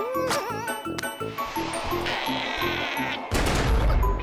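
Cartoon soundtrack: rhythmic background music, with a short rising, wobbling squeak from the cartoon bunny's voice at the start, a hissing rush in the middle and a deep low thud near the end.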